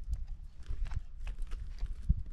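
Wind rumbling on the microphone, with a series of short, sharp ticks and crackles scattered through it.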